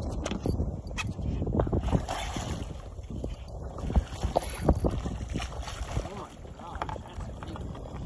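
Wind buffeting the microphone over the water, with scattered splashes and knocks as a hooked red drum thrashes at the surface and is scooped into a rubber-mesh landing net.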